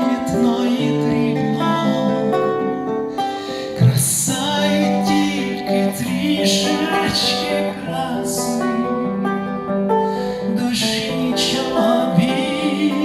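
A man singing a bard-style author's song, accompanying himself on a nylon-string classical guitar. The voice holds long, wavering notes over strummed and plucked chords.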